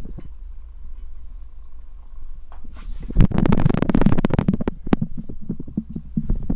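Handling noise on the camera's microphone. A low steady hum, then about halfway in a loud, dense run of rubbing, scraping and quick clicks over a low rumble as the camera and box are moved about.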